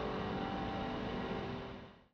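The last of a choir's final chord dying away in the church's reverberation, leaving a steady low room hum that fades out near the end.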